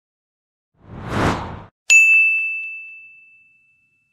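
Logo-reveal sound effect: a rush of noise swells and fades, then a sharp bright ding rings out about two seconds in and dies away over about two seconds.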